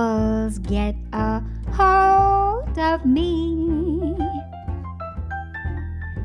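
A woman singing jazz-style phrases into a microphone with piano and bass accompaniment, including a long held note that bends upward at its end and a lower note with wide vibrato.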